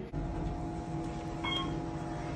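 Elevator car running with a steady hum, heard from inside the cab, with a short electronic ding about a second and a half in.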